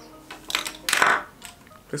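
Makeup items and a plastic blister card being handled: two short rustling, clattering sounds about half a second and a second in.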